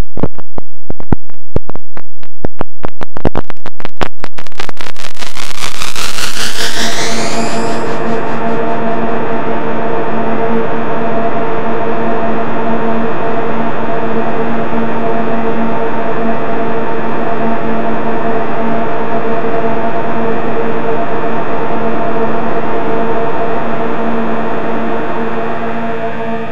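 Electronic sound from the DIN Is Noise software synthesizer. It opens with a train of loud clicks that crowd closer together and merge into an upward sweep about six seconds in. That settles into a dense, steady, noisy chord of many held tones, which starts to shift near the end.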